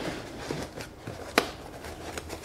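Cardboard box flaps and packing foam being handled: quiet rustling and scraping, with one sharp tap about one and a half seconds in.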